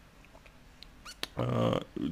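A brief pause with a few faint clicks, then a man's voice holding a short hesitation sound, about half a second long, in the second half.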